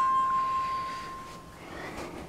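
Small electronic beep-tone from an action camera's built-in speaker: the last held note of its power-on chime, fading away over about a second and a half.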